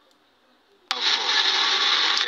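Near silence for about a second, then a loud, steady hiss cuts in suddenly: the background noise of a livestream recorded inside a car.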